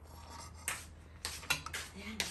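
A metal spoon clinking against a stainless steel cooking pot, several sharp clinks in the second half.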